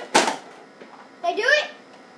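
A Nerf dart blaster firing once, a short sharp pop-and-whoosh of released air just after the start. About a second later a child gives a brief exclamation.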